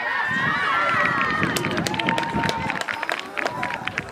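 High-pitched voices shouting and calling over one another at a rugby match, with one long held shout about two seconds in. A scattered run of sharp taps or claps joins in during the second half.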